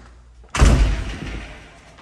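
A house's front door shutting with a single heavy thud about half a second in, the sound fading over about a second.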